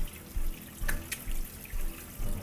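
Water running from a garden hose and splashing onto a metal dog cage's plastic floor slats as it is washed. Low thuds repeat about twice a second underneath, with two sharp clicks in the middle.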